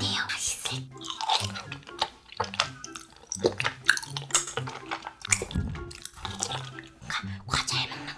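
A person chewing and eating tteokbokki close to the microphone, with many short wet mouth sounds, over steady background music.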